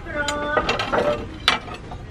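Stacked plates clinking and scraping against each other as plates are lifted off the pile, with several sharp clinks and a brief ringing tone early on.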